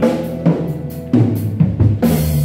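Electric bass guitar playing a low line over a drum kit, with several snare and kick hits in the second half, like a drum fill.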